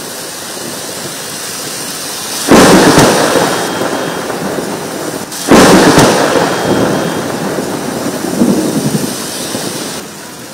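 Heavy rain falling steadily on paving, with two loud thunderclaps about two and a half and five and a half seconds in, each rumbling away over a second or two.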